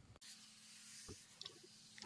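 Near silence: faint room tone, with a faint click about a second in.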